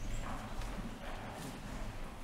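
Footsteps and shoe heels clicking on a hard tiled floor as several people walk, over a low steady hum.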